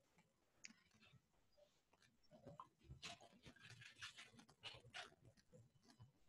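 Near silence, with faint, irregular small clicks and ticks starting about two seconds in.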